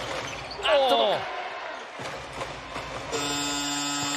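Basketball arena shot-clock buzzer sounding a steady electronic horn tone, starting about three seconds in as the shot clock runs out with a three-point shot in the air. Before it there is a voice and some court sounds.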